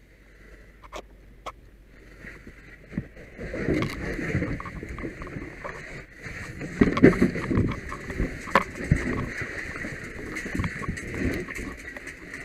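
A firefighter in turnout gear moving: a few sharp clicks at first, then a steady hiss with irregular muffled thumps and rustles of gear.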